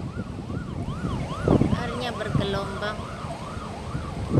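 An emergency-vehicle siren sweeping rapidly up and down in pitch, about two sweeps a second, over low wind rumble on the microphone.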